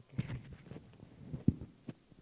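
Clip-on lapel microphone being handled and adjusted on a shirt collar: a string of irregular dull thumps and rustles, the loudest about one and a half seconds in.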